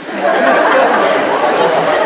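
A large audience laughing together in a hall. The laughter swells a moment in and stays loud.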